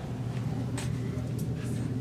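Steady low rumble of distant city traffic, with a few faint ticks.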